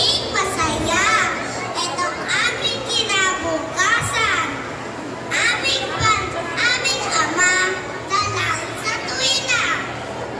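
A young boy's voice speaking continuously into a microphone, amplified through a PA system in a large hall, its pitch rising and falling sharply.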